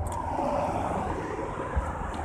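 Steady outdoor background noise: a low rumble with a hiss above it, even throughout, with no distinct events.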